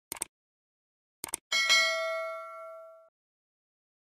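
Subscribe-button sound effect: two quick pairs of clicks, then a single bell ding that rings for about a second and a half and fades away.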